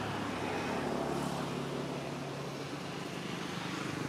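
A low, steady engine hum from a motor vehicle running.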